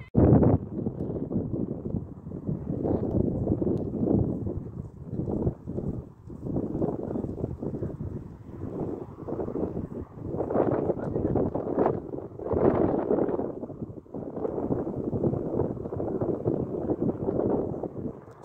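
Wind buffeting a phone's microphone outdoors: a rough rushing noise that swells and dips in uneven gusts.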